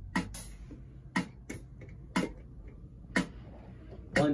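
A count-in on drumsticks: sharp wooden clicks about a second apart, setting the tempo before the drum kit comes in.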